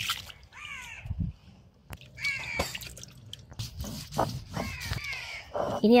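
Crows cawing several times, with water splashing and dripping as a flat stone grinding slab is rinsed by hand.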